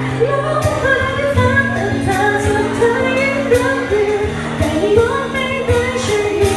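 Female vocalist singing a Thai pop ballad live with a small band: her voice carries the melody in long held notes over steady low notes, guitar and a drum kit keeping time with regular cymbal strikes.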